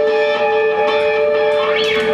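Live rock band's electric guitars holding a steady, ringing chord at the close of a song, with no drums.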